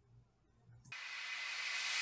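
Near silence, then from about a second in a steady hiss that grows louder.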